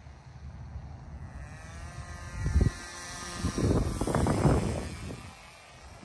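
Propeller of a Titan Cobra VTOL fixed-wing drone flying past overhead, a thin whine whose pitch sweeps downward as it passes. Wind buffets the microphone, loudest around the middle.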